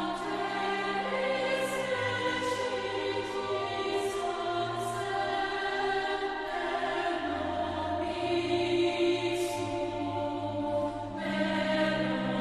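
Choral intro music: long held chords that change every couple of seconds over a slowly moving bass, with several brief hissing swells on top.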